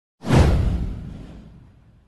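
Intro whoosh sound effect with a deep low boom: it hits suddenly just after the start and fades away over about a second and a half.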